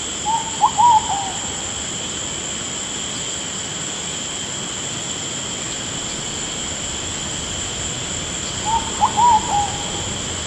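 A steady, high insect chorus of night ambience, with a short animal call of a few notes heard twice: once about half a second in and again near the end.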